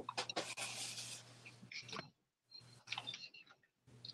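Faint clicks and a short, soft rustle.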